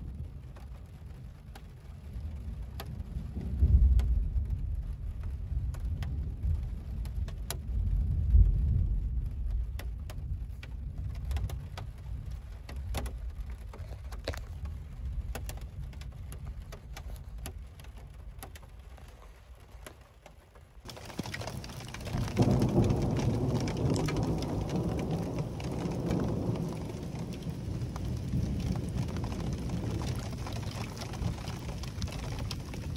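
Rain drumming on a Jeep's roof and windows, heard from inside as scattered sharp ticks, with rolling thunder rumbling at about four and eight seconds in. About two-thirds of the way through, a cut brings a louder, steadier rain noise.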